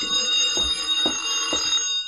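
Telephone bell ringing, a radio-drama sound effect: one long ring that stops at the end.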